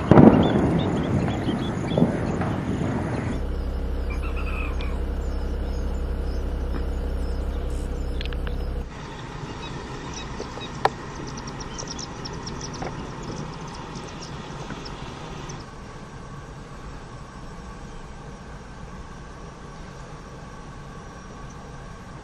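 Outdoor background noise that changes at several cuts, with a steady low rumble from about three to nine seconds in. Faint, high, short chirps of a small-bird flock (munias) come through, most often in the middle part.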